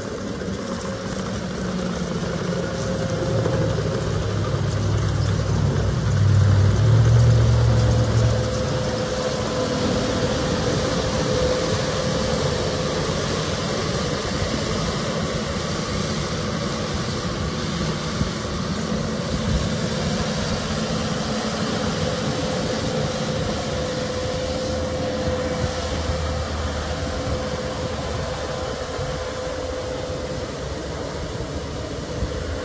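Diesel engine of a Kubota compact track loader running as the machine moves across gravel. The engine is loudest and deepest about six to nine seconds in, then settles to a steady lower-level running sound.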